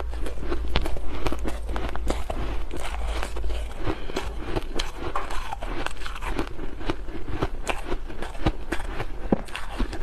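Close-miked biting and crunching of refrozen, snow-like ice: a dense, steady run of crisp crackles as mouthfuls are bitten off and chewed. A low hum sits under the first few seconds.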